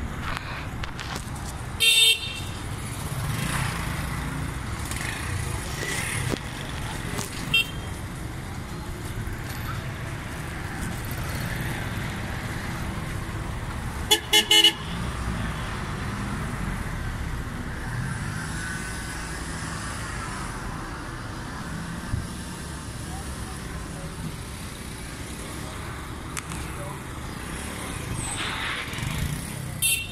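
Busy street traffic: engines running steadily, with vehicle horns honking in short blasts, once about 2 seconds in and three times in quick succession around the middle.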